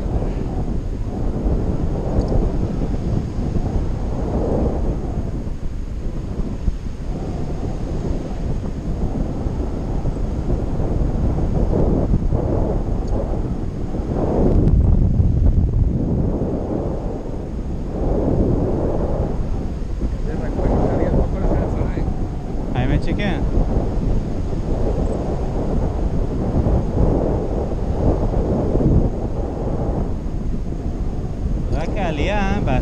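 Airflow buffeting the action camera's microphone during a paraglider flight: a loud, steady low rumble that swells about halfway through.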